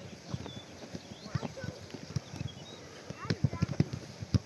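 Footballs being kicked and bouncing on grass: a series of dull thuds, scattered at first, then several in quick succession about three seconds in.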